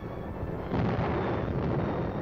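Low rumbling noise of a distant explosion on a battle soundtrack, swelling about three-quarters of a second in.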